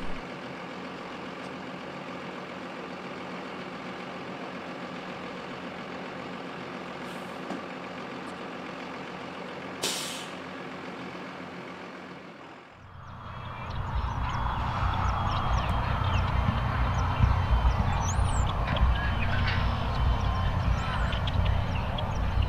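Blue Bird bus engine idling steadily, with a short hiss of air brakes about ten seconds in. After a brief dip, a louder low rumble with faint high chirps takes over.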